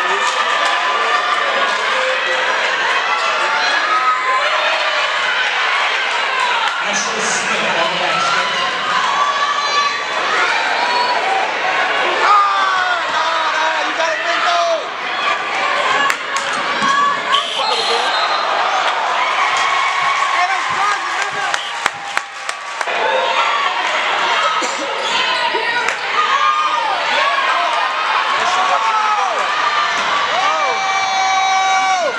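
Crowd at an indoor basketball game: many spectators talking and shouting at once, echoing in the gym, with the thud of the ball bouncing on the hardwood court.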